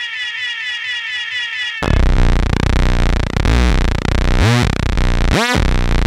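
Oldschool techno in a DJ mix: the kick drum drops out for a short break of repeating falling synth tones, then about two seconds in a loud, dense synthesizer sound comes in, with two quick rising sweeps near the end.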